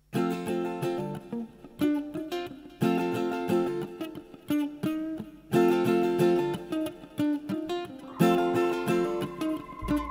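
Mandolin played solo, picking ringing chord phrases, each opening with a sharp attack and dying away before the next, about five phrases in all.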